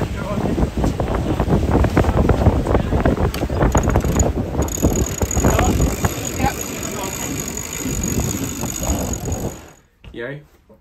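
Wind buffeting the microphone aboard a racing catamaran under sail, with steady rushing noise and a stream of small rattles and clicks from the boat. It cuts off suddenly near the end.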